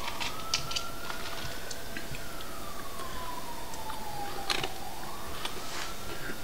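A faint siren, one thin tone slowly rising for about two seconds, then falling for about three and starting to rise again near the end. Scattered small clicks of ice and fizz come from soda being sipped from a plastic cup.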